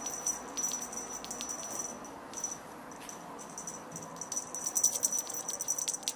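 A small hand-held rattle toy shaken in bursts: quick, bright, high-pitched rattling clicks, busiest near the start and again over the last second or so.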